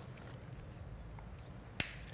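Adhesive tape being pulled and torn off by hand to stick a paper flyer to a glass window, with one sharp snap near the end over a low steady background rumble.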